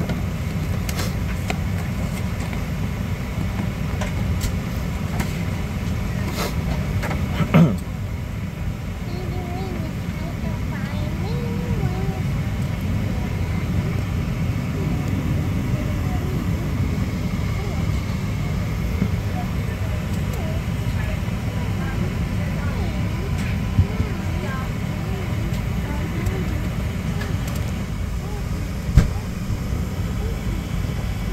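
Steady low rumble inside the cabin of a Boeing 737-700 on the ground, with faint murmuring voices of other passengers. There is a short knock about seven seconds in and another near the end.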